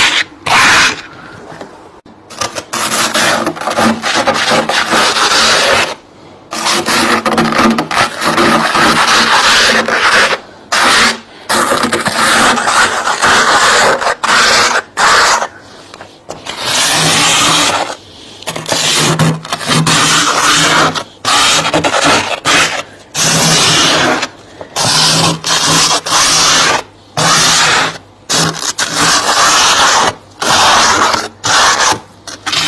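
Thick frost being scraped off the inside walls of a chest freezer with a small hand scraper: repeated scraping strokes, most a second or more long, broken by short pauses.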